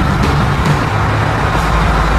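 Car driving along a highway: steady road and engine noise.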